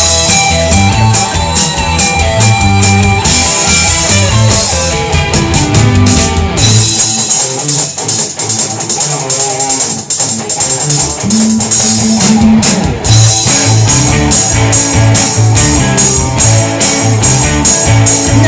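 Live rock band playing an instrumental passage: electric guitars over drums. The bass and low end drop away about six seconds in, and the full band comes back in with a steady beat at about thirteen seconds.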